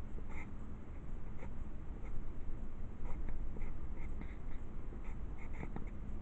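Pencil sketching on paper: short scratchy strokes, some coming in quick runs, as lines are drawn.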